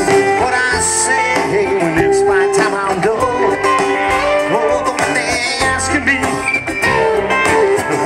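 Live rock band playing an instrumental passage, with electric keyboard and guitar.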